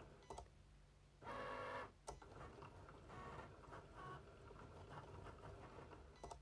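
Cricut Explore Air 2 cutting machine working through a cut: its motors whir faintly as the blade carriage and mat move, with a louder stretch of whirring about a second in and a few light clicks.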